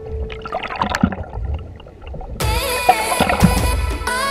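Muffled underwater water rush and gurgle picked up by a submerged camera, low and rumbling, then music cuts in suddenly a little past halfway and becomes the loudest sound.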